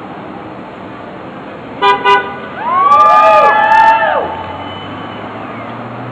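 A passing car's horn gives two quick honks, answered at once by several protesters whooping and cheering for about a second and a half, over steady street traffic.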